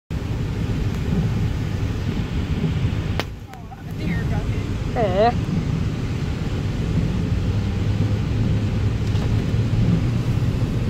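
Steady road and rain noise inside a vehicle's cabin while driving on a wet highway in heavy rain, with a low engine hum. There is a sharp click about three seconds in, followed by a brief quieter moment, and a short wavering vocal sound about five seconds in.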